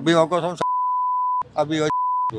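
A man's speech cut out by censor bleeps: a single steady high beep of almost a second with nothing else under it, a few words, then a second beep starting near the end.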